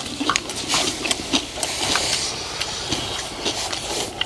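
Metal spoons scraping and clicking against a large wok while scooping egg fried rice, with chewing and mouth sounds of eating, over a steady hiss.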